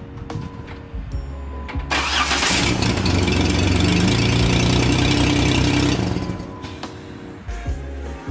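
Jeep Wrangler engine starting about two seconds in and running loudly for a few seconds before dying down, over background music.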